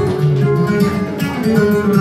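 Flamenco guitar played live, a passage of many quick plucked notes.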